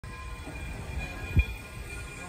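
Frisco 1630, a 2-8-0 steam locomotive, moving slowly with an uneven low rumble, and a single sharp thump about one and a half seconds in.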